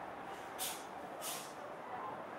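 City street traffic noise, steady, with two short high hisses about two-thirds of a second apart in the middle.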